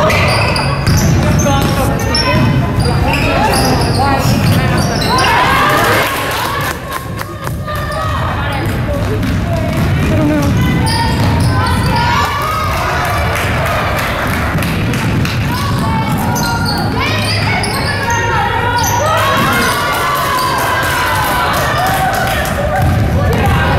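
A basketball being dribbled on a hardwood gym floor during game play, with players' and coaches' voices calling out, echoing in a large, sparsely filled gym.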